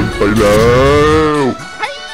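A long drawn-out monster cry that rises and then falls in pitch and cuts off about one and a half seconds in, over background music. Short gliding chirps follow near the end.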